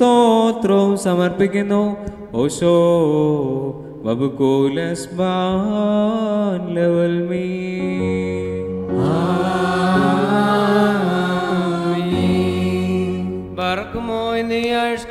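Liturgical chant of the Malankara Holy Qurbana: a sung melody moving through long held notes. About halfway through, steady held low notes come in under a higher singing voice.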